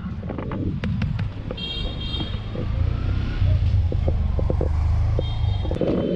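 Street traffic with a vehicle horn sounding twice, a short toot about one and a half seconds in and another near the end, over a steady low rumble and scattered clicks.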